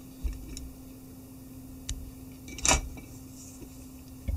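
A few light handling clicks and knocks, then a short, sharp snip about two-thirds of the way through as the tying thread is cut away from the whip-finished head of the fly. A steady low hum runs underneath.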